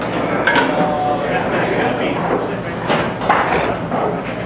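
Indistinct bar-room crowd chatter with a few sharp clacks of pool balls striking on tables in play: one about half a second in and a pair near three seconds.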